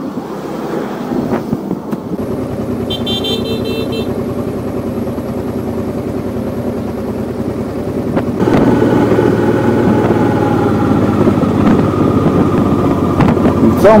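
Motorcycle engine running at a standstill, with a short high beep about three seconds in. About eight seconds in it gives way to a louder sound of riding: the engine running steadily under way with wind rush, its pitch easing slightly down.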